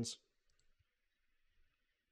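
Near silence: room tone with a few faint computer mouse clicks, after the last syllable of a spoken word at the very start.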